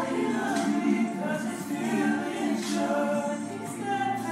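Several voices singing together without instruments, in a steady choral blend.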